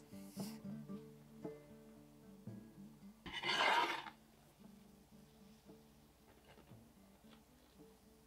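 Soft background guitar music, with a single scraping rub lasting under a second about three seconds in, from the upturned glass bowl of dough being handled on the stone counter.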